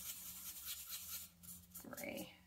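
Paintbrush stirring paint on a paper plate palette: a faint, rapid scratchy swishing that stops about a second and a half in.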